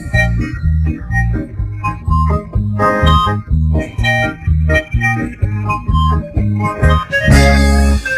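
Instrumental karaoke backing track with no lead vocal: a steady beat carried by bass notes about twice a second, with melody instruments over it.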